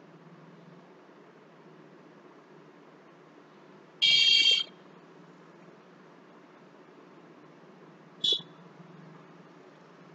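Two high-pitched electronic beeps: one lasting under a second about four seconds in, and a shorter one about eight seconds in, over a faint steady low hum.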